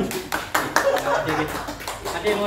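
Voices talking with a scatter of sharp hand claps, irregular, about seven or eight in two seconds.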